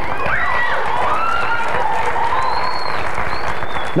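Congregation applauding steadily, with several voices calling out over the clapping.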